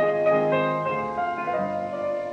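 Piano playing the slow opening of a lullaby, single notes struck and left to ring, on a mid-20th-century recording.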